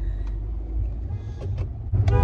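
Low, steady rumble inside a car cabin: engine and road noise, with a couple of faint clicks about one and a half seconds in.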